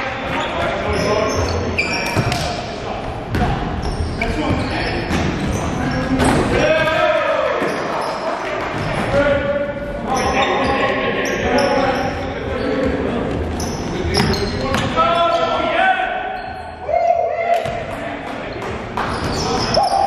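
Basketball bouncing on a gym's hardwood floor during live play, with players' voices calling out, all echoing in a large hall.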